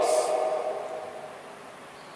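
A pause in a man's microphone speech in a large hall. His last word's reverberation fades over about a second, leaving a low steady room tone.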